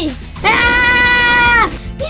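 A cartoon girl's voice holding one long, level, high note of delight for just over a second, ending with a slight drop in pitch, over background music.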